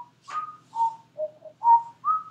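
A person whistling a short tune: about six clear notes, stepping up and down in pitch, one after another.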